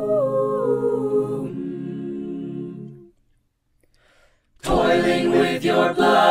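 A cappella vocal ensemble singing a held, wordless chord, its upper voices gliding between notes; the chord dies away about three seconds in. After a brief silence the full group comes in together, louder, near the end.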